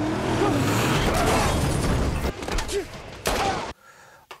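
Action-film soundtrack of a street fight among cars: a loud, dense rush of vehicle noise and crashing that thins out about two seconds in, then one short burst before it cuts off near the end.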